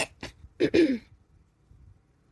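A woman clearing her throat in a few quick bursts, the loudest a double rasp just under a second in.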